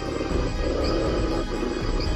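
Wolves growling, a low, rough, steady sound, with background music underneath.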